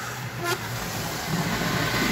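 Model steam locomotive and tender running on model train track: a steady rolling rumble of wheels on rail with a faint motor hum, and one sharp click about half a second in.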